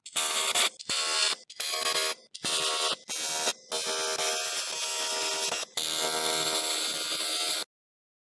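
AC TIG welding arc on aluminium plate, buzzing. It comes in several short bursts with brief gaps, then two longer runs of about two seconds each, and cuts off suddenly near the end.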